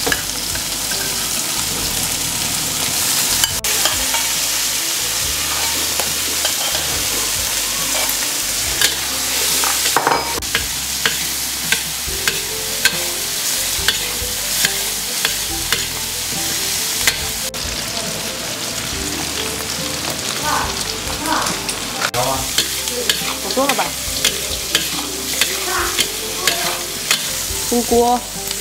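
Chicken pieces sizzling as they are stir-fried in a hot wok with chilies and ginger: a steady hiss of frying, with a metal spatula scraping and clicking against the wok again and again.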